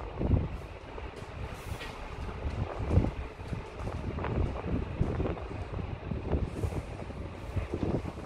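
Wind buffeting the microphone: an irregular low rumble with uneven gusty surges, and no steady tone.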